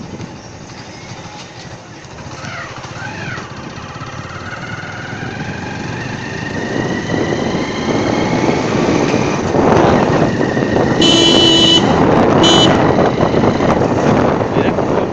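A motor vehicle's engine running and climbing in pitch as it speeds up along the street, growing louder, with a horn sounding twice near the end, a long honk then a short one.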